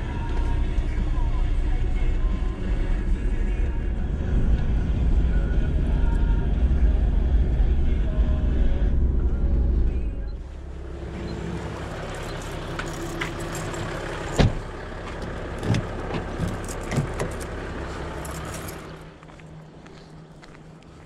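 Vehicle on the move, heard from inside the cabin: a loud, steady low engine and road rumble. About halfway it cuts to a quieter, steady engine hum broken by a few sharp clicks and knocks.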